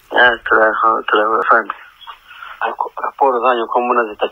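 Speech: a person talking in quick phrases, with a thin, narrow sound as over a phone line or radio.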